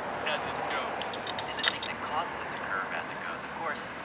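Indistinct voices over a steady background of outdoor noise, with a few short clicks a little over a second in.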